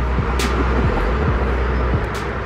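Steady road traffic noise from a busy highway, a low rumble with a wash of tyre noise, with a sharp click about half a second in.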